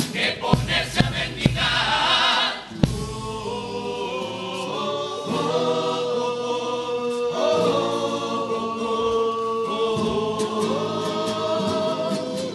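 Male carnival chorus singing in close harmony over Spanish guitars. It opens with a run of sharp rhythmic hits and a short noisy burst, then settles about three seconds in into long held chords.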